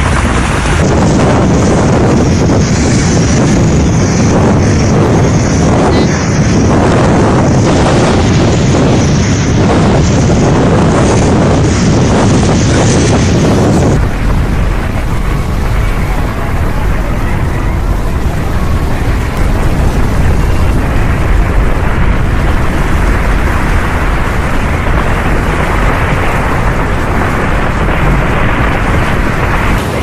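Strong storm wind rushing and buffeting hard against the microphone in a blizzard, loud and continuous. About fourteen seconds in it turns deeper and duller.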